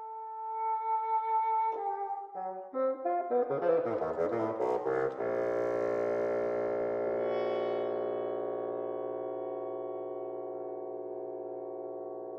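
Woodwind quintet playing live concert music. Held notes give way to a run of quick, shifting notes, and about five seconds in the players settle on a long sustained chord that slowly fades.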